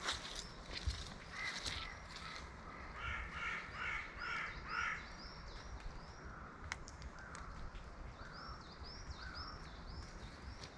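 Outdoor birdsong: a crow cawing repeatedly in the first half, then a smaller bird giving short, high, curved chirps through the rest.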